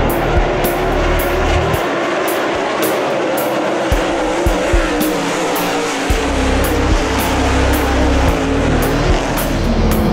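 Dirt late model race cars running at speed on the track, their engines loud and continuous. Rock music with a steady drum beat plays over them.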